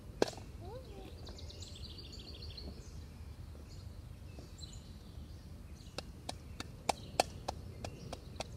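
Outdoor ambience with birds chirping over a steady low rumble. There is a single sharp click just after the start, and in the last two seconds a run of sharp knocks, about three a second.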